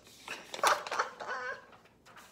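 A woman laughing, a run of short bursts lasting about a second and a half.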